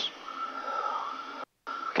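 In-flight cockpit noise of a Piper M600 single-engine turboprop: a steady hiss with a thin, steady high tone running through it. The sound cuts out completely for a moment about one and a half seconds in.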